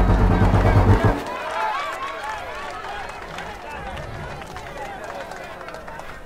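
Trailer music with deep drums cuts off sharply about a second in. It leaves the softer murmur of a crowd of many voices.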